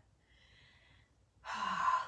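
A woman's loud breath, about half a second long, about one and a half seconds in, after near silence.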